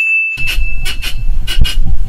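Film trailer title-card sound effects: a steady high-pitched beep-like tone holds for about a second and a half over a loud low rumble with repeated sharp clicks.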